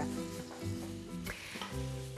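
Diced chicken sizzling as it fries in a pan and is stirred with a wooden spoon. Steady background music plays underneath.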